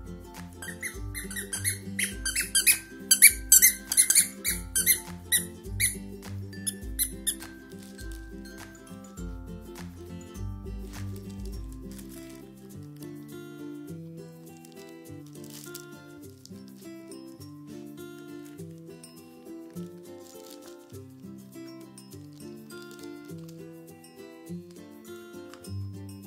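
A plush carrot toy's squeaker squeaked rapidly and over and over as a Scottish terrier puppy chews it, for about six seconds from about a second in, then stopping. Background music plays throughout.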